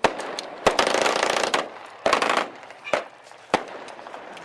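A rapid string of sharp explosive bangs packed tightly together for about a second, then a shorter cluster and a few single bangs spaced about half a second apart: celebratory bangs during Basant.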